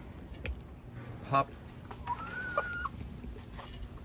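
Domestic hens calling from their coop, with one drawn-out, level call about two seconds in.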